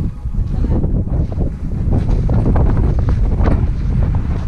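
Wind buffeting the camera's microphone: a loud, uneven low rumble that rises and falls in gusts.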